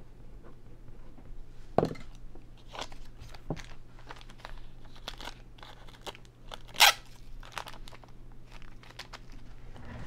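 Clear plastic card sleeves and holders being handled: scattered crinkles and clicks as a trading card is slipped into a sleeve, with a sharp click about two seconds in and a louder, brief crackle near seven seconds. A steady low hum runs underneath.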